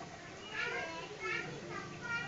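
Children's voices in the background, several short high-pitched calls.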